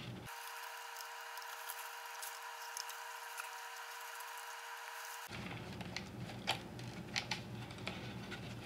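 Quiet room tone with a faint steady hum. In the last couple of seconds come a few soft clicks and taps from hands handling a cardboard-and-wire crank model.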